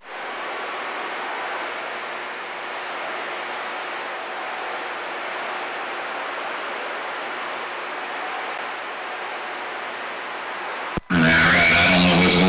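CB radio receiver hissing with steady static on an open channel between transmissions. About eleven seconds in, a click and a jump in level as another station keys up and a voice comes through.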